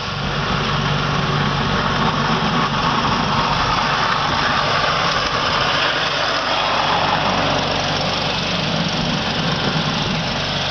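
Bobcat skid steer's engine running steadily while the machine plows snow with a front-mounted blade.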